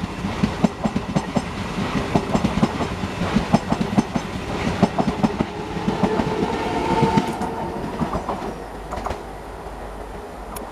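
A MEMU electric multiple-unit train passing close by, its wheels clattering quickly over the rail joints, with a humming tone from about halfway through. The clatter fades near the end as the last coach goes by.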